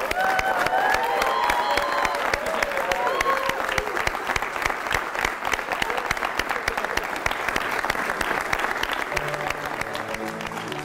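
Congregation applauding, with cheering voices in the first few seconds. Music begins near the end.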